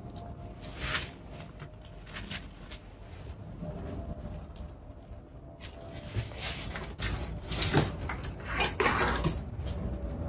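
Scattered small clicks, taps and rustles of hands handling a wired pine bonsai's branches and wire, busiest in the last few seconds.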